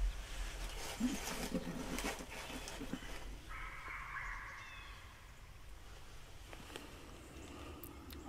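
Sheep dogs barking in the distance as they chase deer, with short calls in the first few seconds and a longer drawn-out call about halfway through. A few sharp knocks come early on, over a steady low wind rumble on the microphone.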